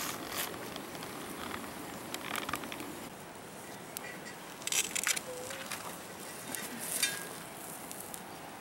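Metal tongs scraping and clicking a few times against a salmon cooked on a hot rock as it is lifted off, with light crackling from the wood fire beneath.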